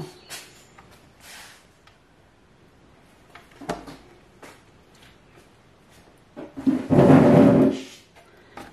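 A ruler and marker being handled on a wooden board: a few light clicks and knocks, then a louder scrape with a drum-like rumble lasting about a second and a half near the end as the ruler is slid along the board.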